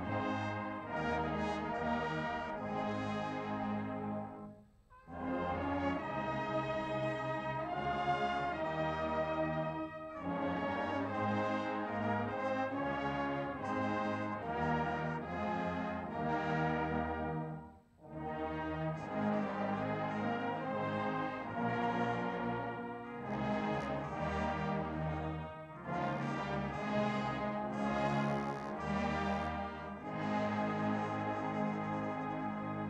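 Massed brass band playing held chords, with two brief breaks between phrases.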